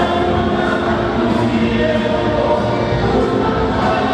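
A congregation of many voices singing together, holding long notes in a steady worship song.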